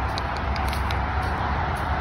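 Steady low rumble of road traffic, with a few faint light crackles over it.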